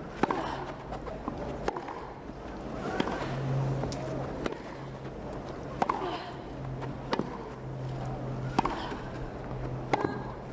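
A tennis rally on a grass court: the ball is hit back and forth, with a sharp racket-on-ball pop about every one and a half seconds, around eight strokes in all, over a steady low crowd hum.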